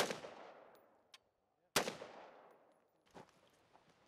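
Two single rifle shots from an M4-type carbine, about 1.75 seconds apart, each a sharp crack followed by an echo that dies away over about a second.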